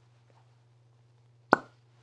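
A single sharp knock about one and a half seconds in, over a low steady hum.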